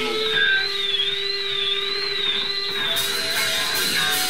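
Live rock band holding a high, evenly wavering electric tone over a steady lower sustained note, with little bass or drums. Cymbal wash comes in about three seconds in.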